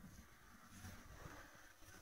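Near silence, with only a faint low rumble.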